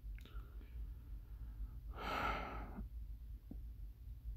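A man's faint sigh, one long breathy exhale about two seconds in, a sign of his annoyance. A low steady hum lies underneath.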